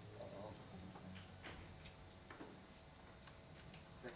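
Near silence between songs, with a faint steady hum and a handful of faint, scattered clicks and knocks from guitars being handled on stage.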